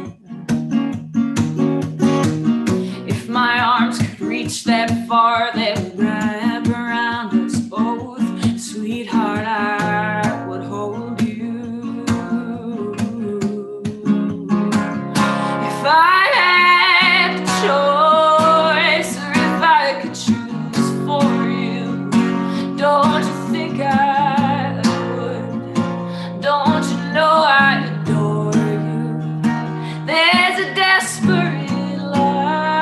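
A woman singing a slow song to her own strummed acoustic guitar, played solo. Her voice climbs and is loudest about halfway through.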